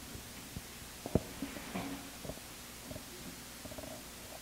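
Handling noise from a handheld microphone being lowered, with soft low thumps and rubbing and one sharp knock about a second in, over quiet room tone.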